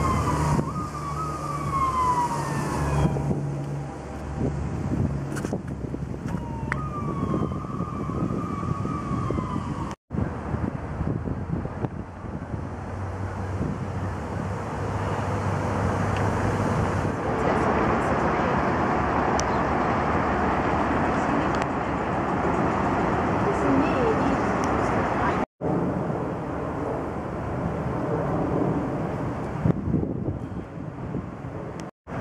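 An emergency vehicle's siren wailing in repeated falling sweeps through the first third, over city traffic noise. After that comes a steady wash of wind on the microphone and distant traffic, with the sound dropping out briefly twice at shot cuts.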